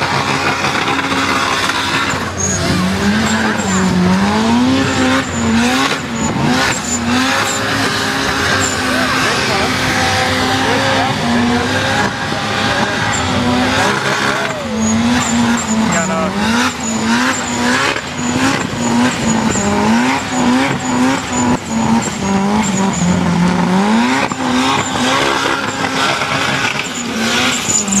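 High-boost turbocharged Toyota engine held at high revs during a burnout, the revs rising and falling again and again over the constant squeal and hiss of spinning rear tyres. The revs dip briefly about halfway through before climbing again.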